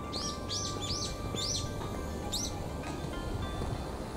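A bird calling outdoors: a run of about six short, high chirps, each dropping in pitch, in the first two and a half seconds. Background music plays throughout.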